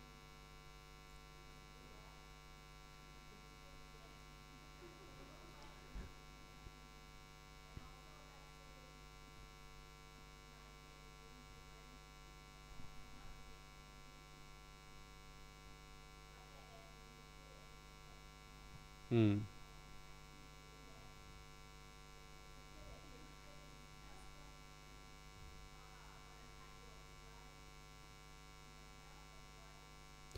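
Steady electrical mains hum, low and even, with a brief vocal sound about two-thirds of the way in.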